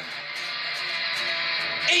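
Heavy metal music: a distorted electric guitar plays on between sung lines, and a singing voice comes back in right at the end.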